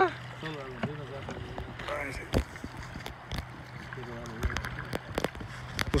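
Voices talking over the steady rush of a flowing river, with a few sharp knocks.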